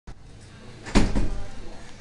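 A sudden thump about a second in, followed by a few softer knocks and some rustling.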